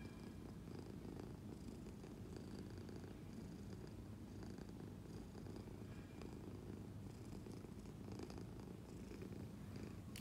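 Domestic cat purring steadily, a low, even rumble.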